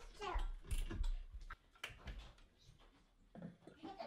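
Faint, scattered metallic clicks and taps of steel barn-door rail brackets and bolts being handled and fastened by hand, falling quiet for about a second past the middle.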